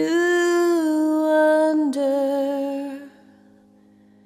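Female vocalist holding a long wordless sung note with light vibrato. The note steps down in pitch just under two seconds in and breaks off about three seconds in, leaving the music faint.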